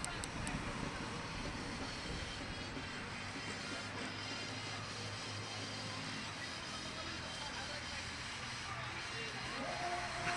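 Steady wash of outdoor background noise with a faint low hum, without any distinct events.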